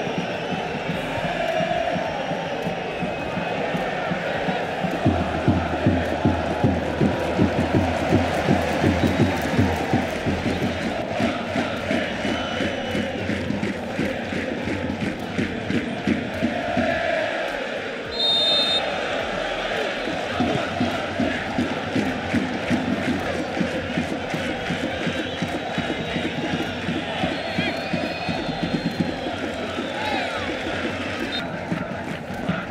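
Stadium crowd chanting and cheering throughout, with a steady rhythmic beat running under the chants for a stretch after about five seconds in and again later. A short high whistle blast sounds a little past the middle.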